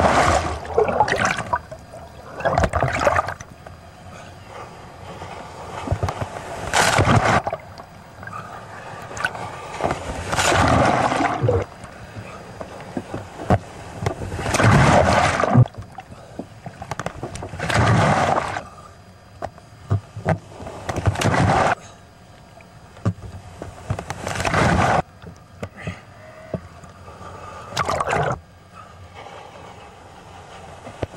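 Ocean water splashing and rushing over a waterproof camera housing as the cameraman swims in the surf, in loud, rough bursts every two to four seconds with a quieter wash of water between.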